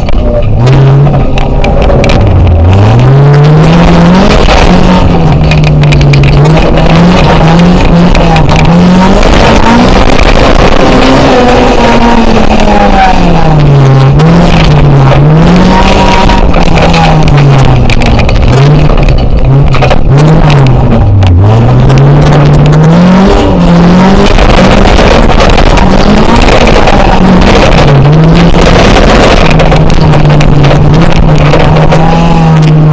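Race car engine heard from inside the stripped cabin during an autocross run, very loud, its pitch repeatedly climbing and falling as the driver accelerates, lifts and changes gear, with deep drops about two and a half seconds and twenty-one seconds in.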